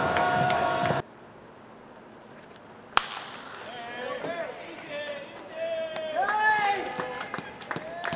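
Ballpark crowd noise that cuts off abruptly about a second in, leaving quiet stadium ambience; about three seconds in a single sharp crack of a bat hitting a baseball, a fly ball to left field, followed by people's voices calling out.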